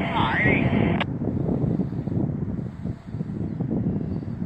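EMD MP15 switcher's 12-cylinder diesel engine running with a steady low rumble as it pulls cars out slowly, mixed with wind on the microphone. A short voice is heard in the first second.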